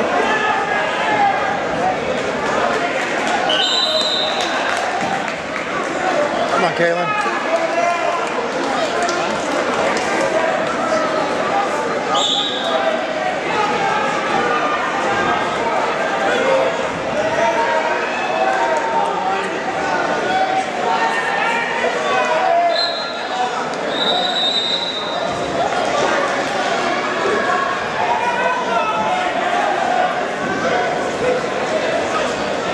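Spectators in a gym crowd talking and shouting over one another throughout. A few short referee's whistle blasts come through: about 4 seconds in, about 12 seconds in, and twice around 23–24 seconds.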